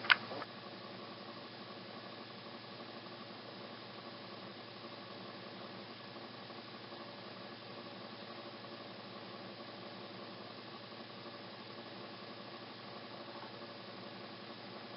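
A single sharp click right at the start, then faint steady hiss with a low hum underneath: room tone, with no sound from the spider or the mealworm.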